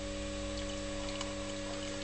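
Steady electrical hum from a rewound microwave oven transformer supplying an HHO dry cell at about 25 amps, with a few faint ticks over it.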